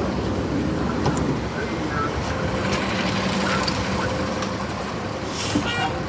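City transit bus running with a steady engine hum, a short hiss near the end.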